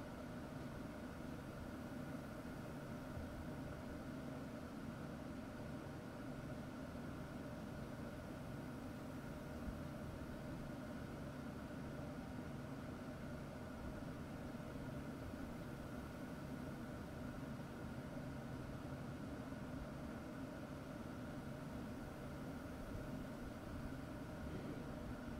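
Steady background hum with a faint hiss, held at one level with no changes or distinct events: room tone.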